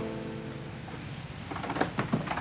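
The last of a film-score orchestral string cue dying away, followed by a few faint short knocks and clicks from about one and a half seconds in.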